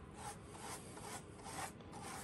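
A stiff bristle brush being scrubbed in faint, repeated short strokes across a slot car track's rough stone-textured painted surface, dry-brushing on a darker racing line.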